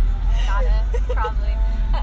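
Women talking, the words unclear, over a steady low rumble.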